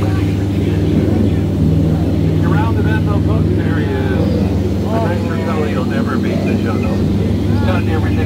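A tour boat's motor drones steadily as the boat moves along the channel, a loud, even low hum with the propeller churning the water beside the hull. Voices can be heard faintly over it now and then.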